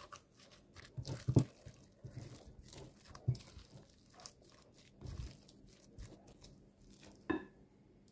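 Silicone spatula mashing and stirring boiled potatoes with herbs and spices in a glass bowl: soft, irregular squishing and scraping, with a few louder strokes.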